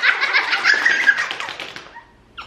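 Children laughing and squealing with excitement, high-pitched and wavering, dying away near the end.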